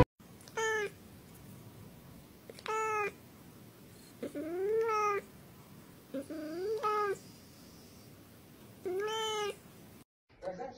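A domestic cat meowing five times, about two seconds apart. The middle two meows are longer and rise in pitch.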